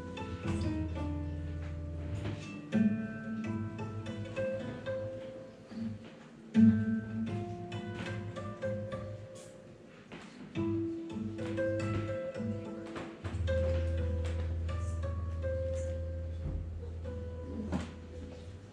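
A tango played live by an instrumental duo: quick plucked acoustic guitar notes over long held low notes and chords from the second instrument.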